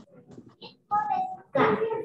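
A child's voice speaking aloud: faint at first, then louder from about a second in.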